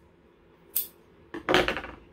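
Metal scissors being handled and set down on a tabletop: a short sharp click about three-quarters of a second in, then a louder knock a little after halfway through.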